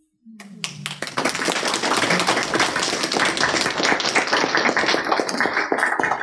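Applause from a small group of people clapping, starting about half a second in and carrying on steadily.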